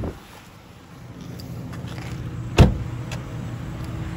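2003 Pontiac Vibe's four-cylinder engine idling steadily with a light ticking from the valve train. A car door shuts with a single thud about two and a half seconds in.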